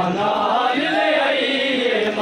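A noha, a Shia mourning lament, chanted in long, bending held notes.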